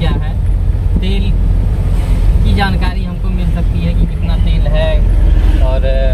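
Steady low drone of a Mahindra Bolero Maxx Pik-Up HD 1.3 diesel pickup and its road noise, heard from inside the cab while driving, with voices talking over it.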